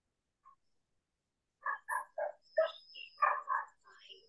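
A dog barking in a quick series of short barks, starting about a second and a half in.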